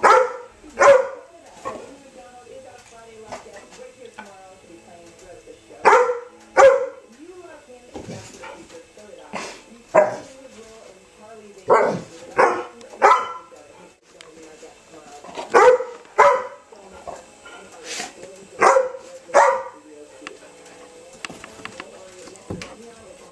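Dog barking, mostly in pairs of sharp barks a little under a second apart, repeated every few seconds.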